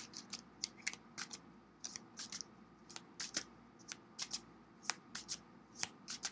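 A deck of tarot cards being shuffled by hand: faint, irregular snaps and short slides of the cards, about three a second.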